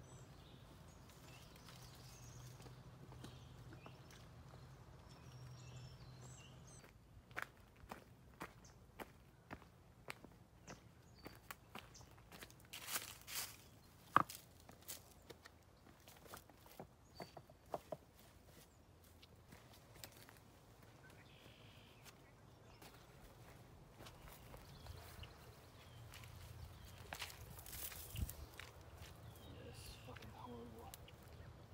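Hikers' footsteps on a leafy, muddy forest trail: a run of irregular steps, crunches and snaps from about a quarter of the way in to just past halfway, faint otherwise.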